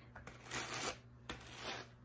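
A wooden reverse-tine brush pressing wool down into the metal tines of a blending board's carding cloth: a few short brushing strokes.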